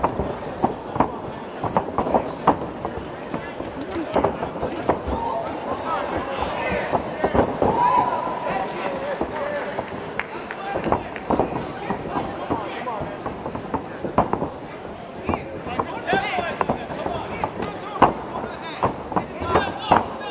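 Spectators shouting and yelling around a kickboxing cage, over repeated sharp smacks and thuds of gloved punches, kicks and footwork; the loudest smack comes near the end.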